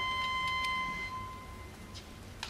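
A single high, thin bowed cello note held steadily, then fading away about a second and a half in. A few faint clicks follow.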